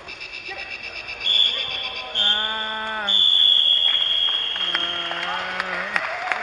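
A loud, steady, high electronic buzzer tone sounds for several seconds after a brief pulsing beep, with two long drawn-out vocal calls over it.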